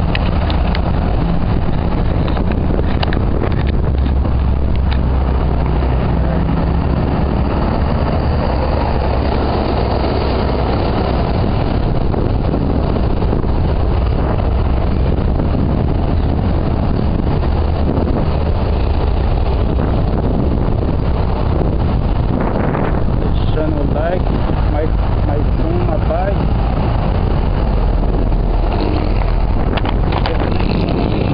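Steady wind rumble on the microphone of a camera on a moving bicycle, mixed with the noise of passing road traffic.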